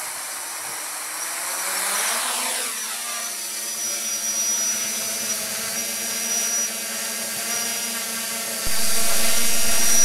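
A small quadcopter's electric motors and propellers whine, rising in pitch as they spin up for lift-off about two seconds in, then holding a steady hover pitch. About a second before the end the sound suddenly gets louder, with a low rumble added.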